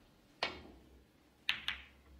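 A snooker shot: the cue tip strikes the cue ball, then about a second later there are two sharp clicks of balls colliding in quick succession.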